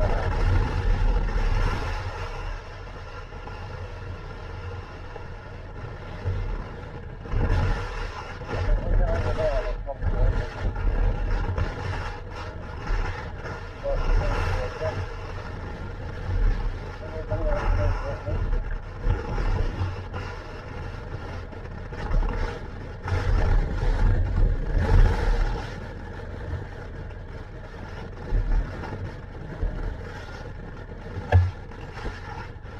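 Kawasaki motorcycle engine running while ridden slowly, its pitch rising and falling with the throttle, with wind buffeting the helmet-mounted microphone in surges.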